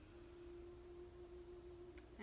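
Near silence: room tone with one faint, steady tone held throughout.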